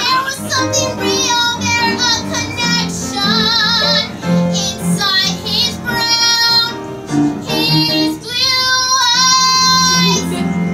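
A woman singing a show tune over instrumental accompaniment, with vibrato on the held notes. She ends on a long sustained note.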